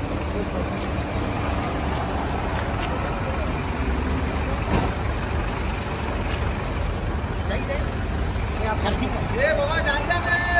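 A car engine idling with a low steady rumble, under indistinct voices of people around it; a voice becomes clearer near the end.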